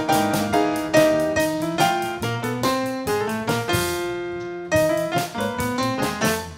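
Piano playing a flowing run of notes and chords, with one chord held for about a second near the middle.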